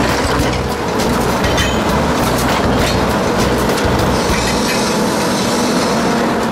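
Excavator-mounted Xcentric Ripper XR20 working into lava stone: a continuous rattling clatter with many sharp knocks of breaking rock, over the low running of the Volvo EC210B LC excavator's engine.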